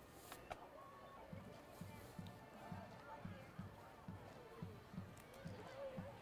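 Faint steady drumbeat, about three beats a second, starting a little over a second in, under faint indistinct voices.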